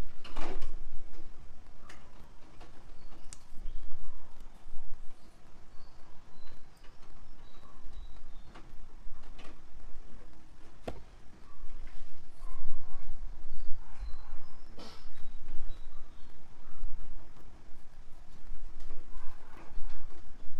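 Handling noise: scattered clicks and taps of a handheld microphone and its cardboard box being handled, over a steady low rumble.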